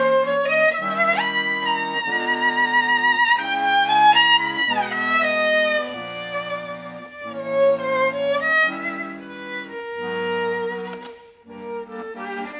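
Violin and accordion duo playing: the violin carries a melody with vibrato and slides up and down in pitch over sustained accordion chords that change every second or so. Near the end the music thins to a quieter held note.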